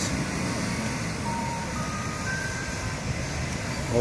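Steady rumble of a building site and street traffic, with two faint brief tones, a lower one about a second in and a higher one a little after two seconds.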